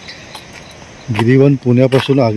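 Faint insect chirring, crickets, in thick vegetation, then a man starts speaking about a second in.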